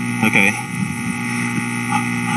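Steady electrical hum through a microphone and PA system, with a short vocal sound just after the start.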